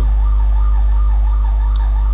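A steady low electrical hum, the mains hum of the recording setup, with a faint warbling tone wavering above it.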